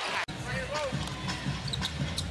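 A basketball being dribbled on a hardwood arena floor over the low rumble of an arena crowd, with a brief dropout of the sound just after the start.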